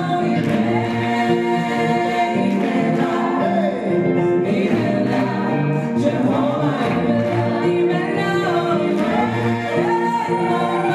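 Gospel choir singing in full voice, several voices holding and bending notes together over a steady low accompaniment.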